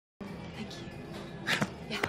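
Bar-room background: quiet music and a murmur of patrons. A short loud cry rings out about one and a half seconds in.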